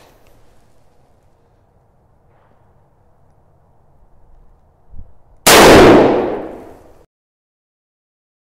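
A single shot from a revolver chambered in .500 Bushwhacker, firing a 400-grain copper solid bullet. The shot is very loud and sudden, and rings out under the range roof for about a second and a half before the sound cuts off suddenly. A faint low knock comes about half a second before the shot.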